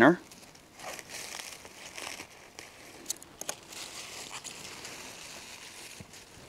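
Scissors snipping through lettuce stems, with several sharp snips over the rustling and crinkling of the red leaf lettuce leaves as the heads are cut and gathered.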